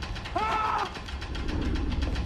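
Film-trailer sound design: a fast, even mechanical ticking, about ten clicks a second, over a low rumble. A short wavering pitched sound comes in about half a second in.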